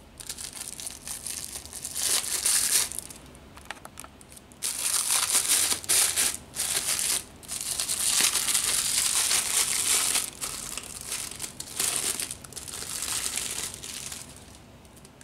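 Clear plastic wrapping crinkling as it is pulled off a roll of carbon (thermal-transfer) printer ribbon, in irregular bursts of rustling with a couple of short pauses.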